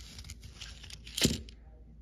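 Half-dollar coins clinking against each other as one is slid out of an opened paper coin roll: faint light clicks, with one sharper clink a little past halfway.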